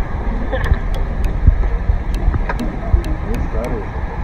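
Wind rumbling on a phone's microphone outdoors, with faint voices in the background. Faint regular ticks come about three times a second.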